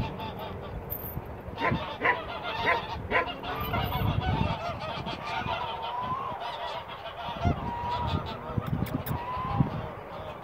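Geese honking, several calls overlapping, with a run of louder, sharper honks about two to three seconds in.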